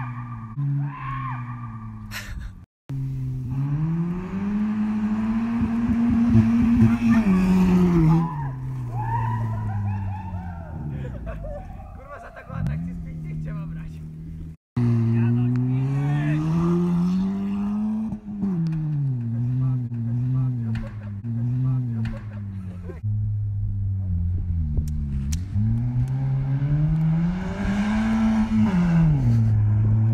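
Ford Puma's engine revving hard, rising and falling again and again, as the car slides around on loose dirt, with tyre and dirt noise underneath. The sound breaks off abruptly twice, a few seconds in and about halfway through.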